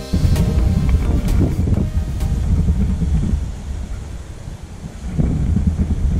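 Wind buffeting the GoPro's microphone as a low, gusty rumble, easing off in the middle and picking up again near the end.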